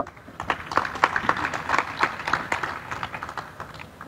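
An audience applauding: many hands clapping. The clapping swells in the middle and dies away near the end, as the speech resumes.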